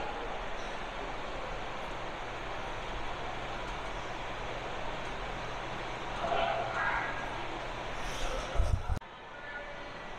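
Steady indoor background noise with a low hum and a faint distant voice about six seconds in, then a couple of low thumps before the sound drops off suddenly near the end.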